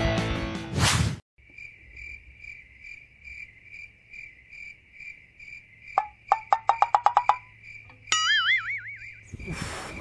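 Comedy sound effects over an edited scene. A high chirping tone pulses about twice a second. A quick run of about ten sharp plucked clicks comes between six and seven seconds, and a wobbling, warbling tone follows about eight seconds in. The tail of background music fades out in the first second.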